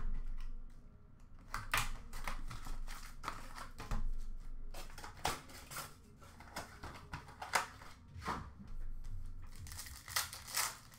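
Foil trading-card pack wrappers crinkling and tearing as packs are handled and ripped open, with irregular sharp rustles and clicks of cardboard and cards being moved.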